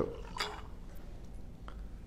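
Liquor poured from a bottle into a glass of ice, faint, with a brief sound about half a second in and a light click near the end.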